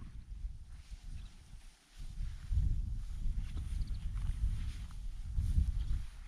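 Footsteps swishing through tall dry prairie grass, with low wind rumble on the microphone, easing off briefly a little under two seconds in.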